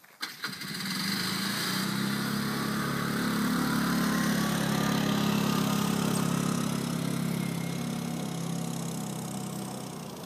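An engine starts with a brief clatter, then runs steadily. It swells to its loudest about halfway through and eases off a little toward the end.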